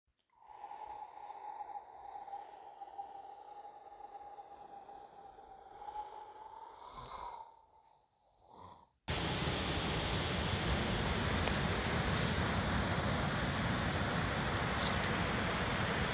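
A steady high whine of a small quadcopter drone's motors that wavers, rises briefly near the end and fades out. About nine seconds in it cuts abruptly to a loud, steady rush of wind on the microphone at the beach.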